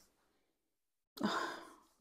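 A woman's audible sigh about a second in, breathy and fading out in under a second: a sigh of delight at a perfume's scent.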